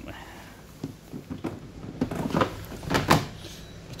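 White plastic water tank of a Hitachi air purifier being handled and slid into its slot in the base of the machine, giving a series of plastic knocks and clunks, the loudest about three seconds in.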